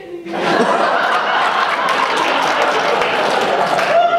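A theatre audience laughing loudly, the laughter breaking out about a third of a second in and carrying on steadily.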